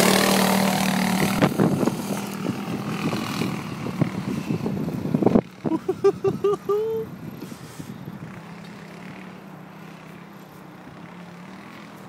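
Off-road buggy's engine running loud as it pulls away, its steady hum fading as it drives off into the distance. A short run of voice sounds comes about six seconds in.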